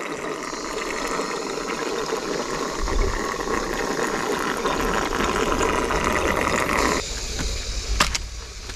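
Thin stream of water trickling and splashing steadily down a rock crevice, heard up close; it cuts off abruptly about seven seconds in.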